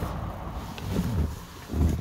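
Low, uneven rumble of wind and handling noise on a phone's microphone as it is moved, with a couple of dull thumps.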